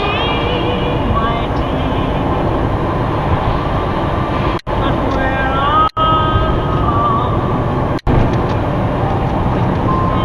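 Steady road and engine noise inside a moving car's cabin, with a singing voice or music heard over it at times. The whole sound cuts out briefly three times in the second half.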